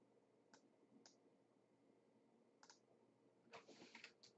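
Near silence, broken by a few faint computer mouse clicks: single clicks spaced through the first part, then a quick run of clicks near the end.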